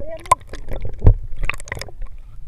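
Sea water splashing and slapping around a small fishing boat, with several sharp knocks and splashes at irregular moments over a low rumble of water and wind, and a brief voice calling out near the start.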